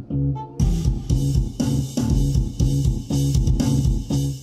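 Sampled instrument patterns from SampleTank, played back from Pro Tools over studio monitors: music with a steady beat and a low bass line, filling out about half a second in.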